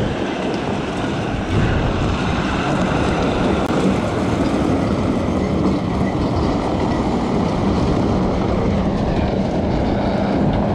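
Semi truck hauling a strip-till toolbar on a trailer, its diesel engine running steadily and its tyres rolling over gravel as it drives past and pulls away. A steady engine hum comes up in the second half.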